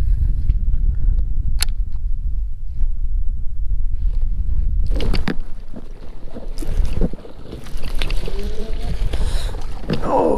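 Wind rumbling on the microphone for the first half. Then, from about five seconds in, dry reeds scraping and crackling against the kayak and camera as the boat pushes into a reed bed.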